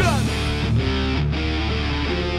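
Live rock band playing loud: electric guitars holding chords that change a few times over a steady low bass note, with a short falling slide right at the start.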